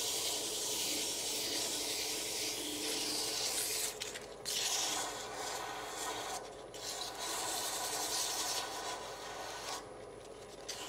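Sandpaper held by hand against a maple burl bottle stopper spinning on a lathe: a steady hiss that breaks off briefly twice when the paper lifts from the wood, with the lathe running underneath.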